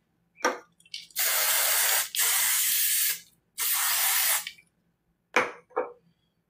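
Self-tanning spray hissing out of an aerosol can in three steady sprays of about a second each, with a few shorter sounds before and after.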